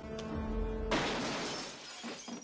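Film soundtrack: held music notes over a low swell, then about a second in a single pistol shot with window glass shattering, the crash fading out over the following second.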